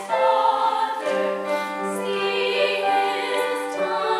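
Two female soloists singing a slow duet in long held notes, over steady lower sustained notes.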